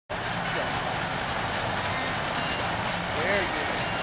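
Water splashing as a child swims in a pool, under a steady outdoor noise, with a short voice call near the end.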